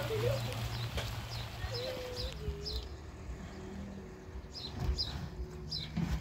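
Faint outdoor sounds: short high bird chirps repeating every second or so, and a drawn-out wavering call about two seconds in, over a low hum.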